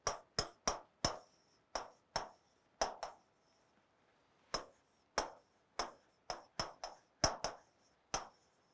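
Pen tip tapping and clicking against an interactive touchscreen display during handwriting: a string of short, irregular clicks, with a pause of about a second midway.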